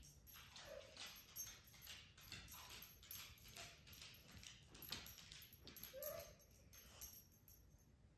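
A dog whining faintly, with two short whines about a second in and about six seconds in, amid light irregular clicks of its claws on a hardwood floor.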